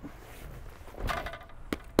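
Black leather motorcycle jacket being handled and laid down over a motorcycle's fuel tank: a soft rustle about halfway through, then two sharp taps near the end.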